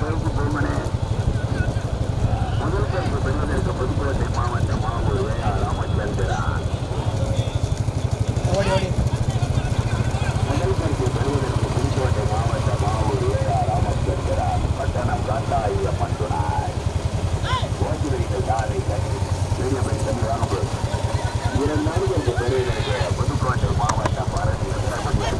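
A motor vehicle's engine running steadily throughout, with indistinct voices over it.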